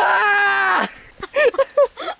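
A person's voice holding one long, slightly falling cry for nearly a second, then three or four short up-and-down vocal sounds.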